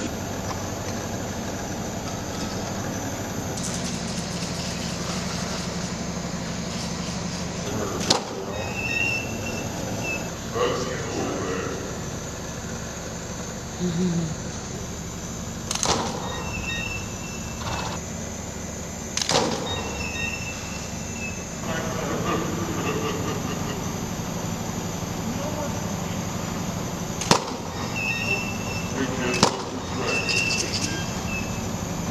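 Studio photo strobes firing with sharp clicks five times, each followed about a second later by a short high beep as the flash signals it is recharged, over a steady hum and faint voices.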